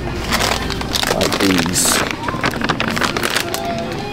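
Supermarket aisle ambience: indistinct voices, one brief voice about a second and a half in, over frequent rustling and sharp handling clicks close to the microphone.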